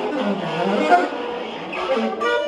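Electric guitar and saxophone playing together live, with sliding, bending pitches.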